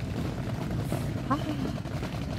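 A steady low rumble in the background, with a woman's short 'ah' about a second in.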